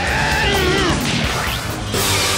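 A cartoon ghost's drawn-out cry that rises and then falls in pitch over about a second, with a crash-like hit. Action background music plays under it.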